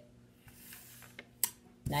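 Quiet pause with a faint steady hum and a few light clicks, the sharpest about a second and a half in, from picture cards being handled on a tabletop.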